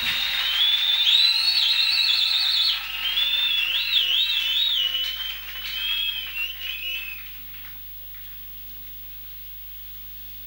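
Several members of a congregation whistling high, warbling trills that overlap, over a murmur of crowd noise; the whistles die away about seven and a half seconds in, leaving only a low steady hum.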